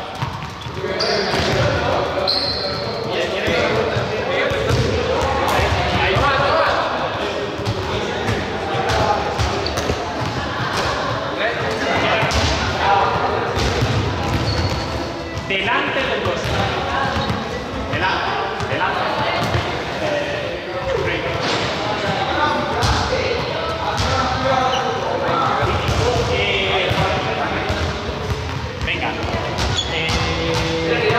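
Balls bouncing and thudding on a sports-hall floor at irregular intervals, over a steady background of several people talking at once, all echoing in a large hall.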